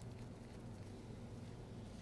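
Quiet room tone with a low steady hum, and at most faint handling of the metal valve parts.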